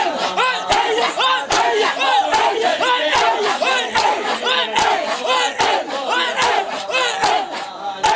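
A crowd of male mourners performing matam: hands slapping on bare chests in unison at a steady beat, a little over one a second, under loud rhythmic shouting from many voices.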